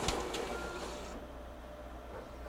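Xerox 7800-series multifunction printer's document handler feeding and scanning a two-sided original: a mechanical whir that quietens and stops a little over a second in.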